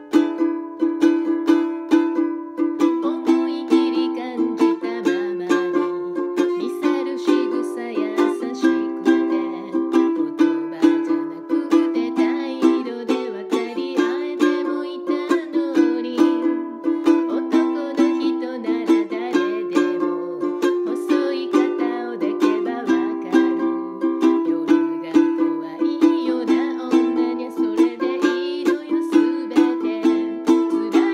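Clear plastic Makala ukulele strummed in a steady rhythm, playing chords.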